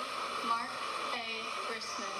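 Names being read aloud at a microphone, heard through a television's speaker, over a steady hiss.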